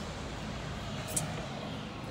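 Steady city street traffic noise, cars running on the road below, heard through an open window, with a short click a little over a second in.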